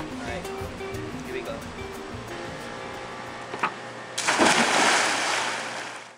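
Background song with singing, then about four seconds in a sudden loud splash and rush of water as someone plunges into a swimming pool, lasting about two seconds.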